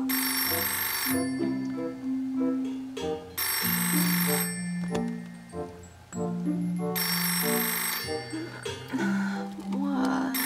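Telephone bell ringing in bursts about a second long, three times, over background music.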